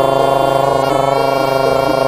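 Jaranan gamelan music in which a slompret, the shrill double-reed shawm of East Javanese horse-dance ensembles, holds one long note over the rest of the ensemble, with a few lower notes changing beneath it.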